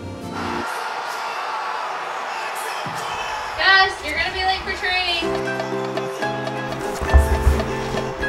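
A steady rushing noise rises about half a second in, with a short excited voice cutting through it partway. About five seconds in, music with a pulsing, repeated chord comes in, and there is a low thump near the end.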